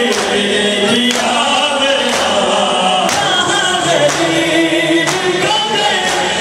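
A male reciter singing a noha through a microphone, with a crowd of mourners chanting along. Under the voices, the mourners beat their chests in unison (matam) in steady strikes about once a second.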